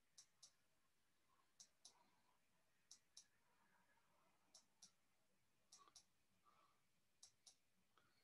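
Faint clicks in quick pairs, about a quarter second apart within each pair, with one pair every second and a half or so, over near-quiet room tone.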